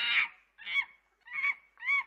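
A monkey screeching and chattering: one loud, rough, high-pitched screech at the start, then three short calls about two-thirds of a second apart.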